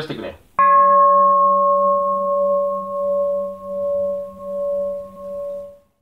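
A bowl bell struck once, ringing on with a slow pulsing waver as it fades out over about five seconds.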